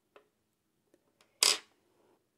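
Hands handling a metal watch movement holder: a few faint clicks, then one short, sharp scrape about a second and a half in.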